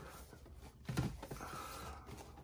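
Cardboard action-figure boxes being handled and stood on a tabletop: faint rustling, with a light knock about a second in.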